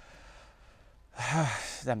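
A man's single audible sigh: a short breathy exhale with a brief voiced rise and fall, just over a second in, after a faint pause.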